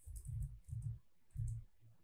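Three short clusters of quick clicks from a computer keyboard and mouse, spread over about two seconds.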